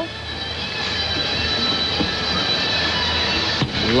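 Steady hubbub of a large arena crowd, slowly swelling, with one sharp knock near the end.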